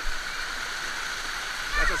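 Water cascading down a set of shallow steps, a steady rushing splash close by.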